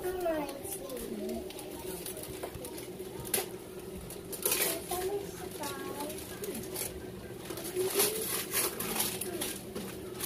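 Gift-wrapping paper rustling and ripping in a few short tears as a present is unwrapped, over faint background chatter.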